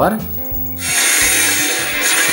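A CRT television's speaker comes on suddenly about a second in with a loud, steady hiss as the set powers up. The sound is now at full strength after the dried-out 100 µF capacitor in its TDA2003 amplifier circuit was replaced.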